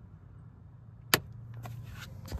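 A sharp click about a second in, then a small car's engine starting and running with a low hum. The electrics are drawing on a single AGM battery.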